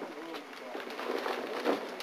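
Quiet rustling and tearing of gift wrapping paper as a present is unwrapped by hand, under faint, low murmured voices.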